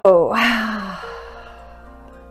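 A woman's long, breathy sighing exhale that falls in pitch and fades out over about a second: the release of a held breath after tensing the whole body. Soft background music plays underneath.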